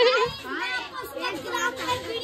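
Children's voices: a girl's high voice with other chatter around it, no words clear enough to make out.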